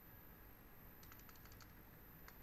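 Faint computer keyboard keystrokes: a quick run of seven or eight key presses starting about a second in, over a quiet background.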